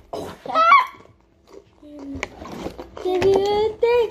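A child's voice making short, wordless vocal sounds: a rising vocal glide, a brief lull about a second in, then a held vocal note near the end.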